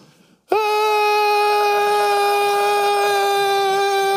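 A man's voice holding one long, high-pitched scream at a steady pitch, starting about half a second in after a brief silence.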